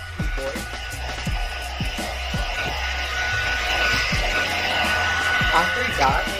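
Handheld air blower running steadily, a steady airy hiss with a thin constant whine, as it blows dust out of a laptop keyboard.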